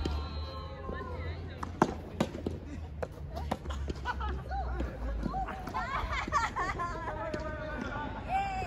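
Soft tennis rally: several sharp hits of rackets on the soft rubber ball and the ball bouncing, the loudest hit about two seconds in, with players' voices calling at the start and again around six to seven seconds in.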